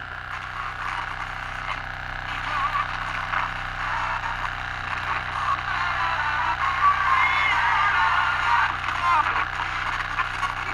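Small pocket transistor radio playing through its tiny speaker as it is tuned: thin broadcast voices mixed with hiss, getting louder over the second half. The radio runs on power from a small Stirling-engine generator.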